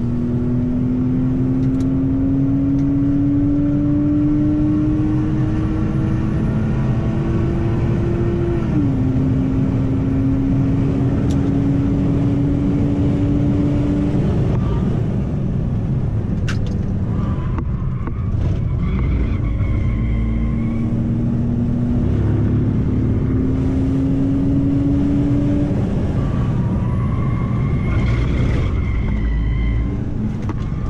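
BMW E90 325i's straight-six engine heard from inside the cabin, pulling under throttle with its pitch climbing steadily, then dropping sharply at an automatic upshift about nine seconds in and climbing again. The engine note fades for a few seconds midway, then climbs once more, over steady low road and tyre rumble.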